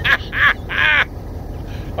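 A man laughing in three short high-pitched bursts in the first second, then going quiet, over a low steady rumble.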